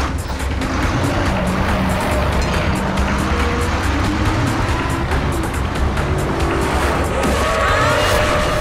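A bus engine running as the coach drives off, mixed with dramatic background music. A rising high-pitched sound comes in near the end.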